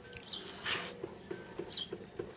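Faint outdoor ambience with small birds chirping briefly a few times, and a short hiss about two-thirds of a second in.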